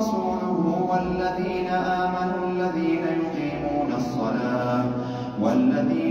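A man's voice reciting the Quran in a melodic, drawn-out chant, holding long notes, with a new phrase beginning just before the end.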